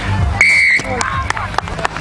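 Referee's whistle, one short steady blast of under half a second about half a second in, signalling the try awarded after the TMO review.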